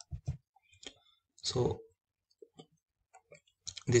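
Scattered faint clicks of a computer mouse, a few small sharp ticks spread over several seconds. A short spoken "so" comes about a second and a half in.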